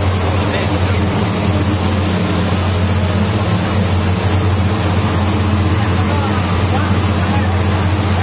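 An engine running steadily at constant speed, a low, even hum with noise over it, and faint voices in the background.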